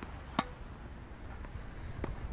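A tennis ball struck once by a racket: a single sharp pop about half a second in, over faint low outdoor background noise.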